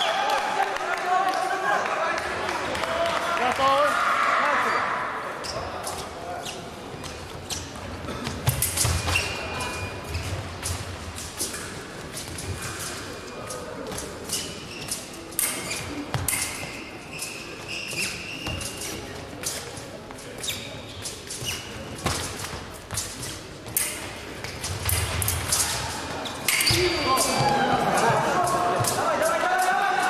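Fencers' feet stamping on the piste, with sharp clicks and short rings of blades meeting during a fencing bout. Voices are heard in the first few seconds and again near the end.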